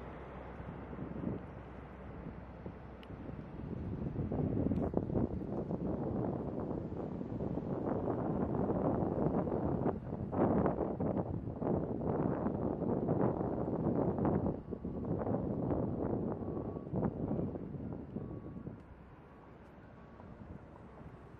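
Wind gusting on the microphone, in uneven surges that build a few seconds in and ease off near the end, over the distant running of a military helicopter flying low across the airfield.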